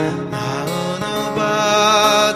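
Strummed acoustic guitar with a voice singing long, drawn-out notes that slide between pitches.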